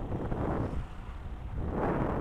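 Wind noise on the microphone over the low hum of a motorcycle riding along a road, easing off briefly in the middle.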